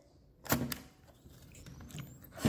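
Instax Mini 9 switched on: the power button beside the lens is pressed and the plastic lens barrel pops out with one sharp click about half a second in, followed by a few faint handling clicks.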